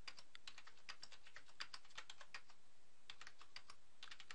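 Computer keyboard being typed on, a quick, irregular run of faint key clicks as two-digit numbers are entered cell after cell, each followed by Enter.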